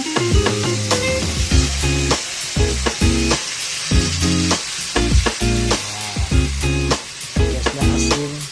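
Chicken pieces and ginger sizzling as they sauté in an aluminium pot, under background music with a steady beat.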